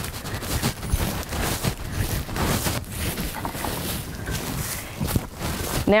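Footsteps on a dirt and gravel path with rustling clothing, a dense irregular crunching and crackling.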